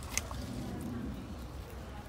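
A single short, sharp click about a fifth of a second in, then faint background noise with a low murmur of a distant voice.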